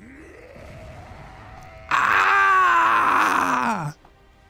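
Voiced roar of a giant anime brute. A quieter, strained growl swells suddenly about two seconds in into a loud, raw bellow, which drops in pitch and cuts off just before the end.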